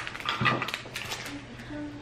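A few light clicks and knocks of small plastic craft pieces being handled on a tabletop, the clearest about half a second in.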